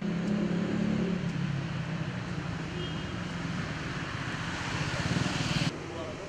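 Motor vehicle engine running with tyre hiss on wet asphalt, the hiss growing louder; the sound cuts off suddenly near the end.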